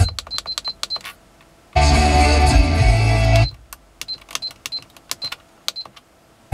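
Car radio playing an FM broadcast: rapid runs of clicks dotted with short high beeps, broken by a burst of music about two seconds in. Short silent gaps fall between the parts.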